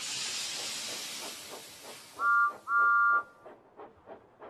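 Cartoon steam locomotive sound effects. A burst of steam hiss starts suddenly and fades while the engine chuffs steadily. About two seconds in come two loud toots of a two-note steam whistle, the second longer than the first.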